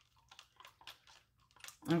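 Faint, scattered light clicks and taps of a stirrer against a cup while isopropyl alcohol and glycerin blending solution is mixed by hand.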